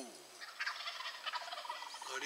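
Wild turkey toms gobbling faintly: a quick run of short, rattling notes.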